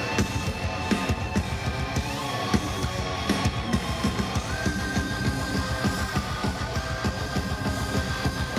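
Metal band playing live: a drum kit struck densely, guitar and keyboards, under a long held melody line that steps up in pitch a couple of times.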